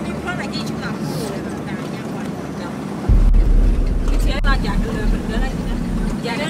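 A vehicle's engine running inside the cabin while driving a rough dirt road, with people's voices. About halfway through, a loud low rumble sets in suddenly and continues.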